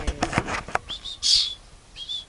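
A person's high whistled calls to summon a hand-reared starling: a short thin whistle about a second in, then a louder, hissy whistle just after. Light clicks and knocks before them.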